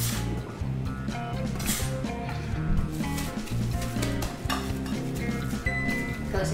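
Background music with a steady bass line, over a few short scrapes of a metal bench scraper and hands gathering crumbly tart dough on a marble counter. The clearest scrapes come about two seconds in and again near four and a half seconds.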